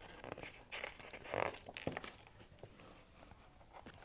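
Pages of a picture book being turned by hand: a few short paper rustles and crinkles, the loudest about a second and a half in.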